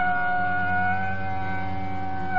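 Sarangi bowing one long held note of raga Gaud Malhar, with its rich overtones, over a steady tanpura drone; the note lifts slightly about halfway through.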